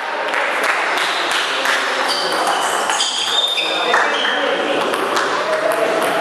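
Table tennis rally: the ball clicking off the bats and the table in quick succession, ringing in a large hall, with a few short high squeaks in the middle.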